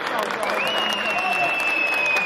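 Scattered hand-clapping from a section of football fans in the stands, with a long, steady high whistle starting about half a second in.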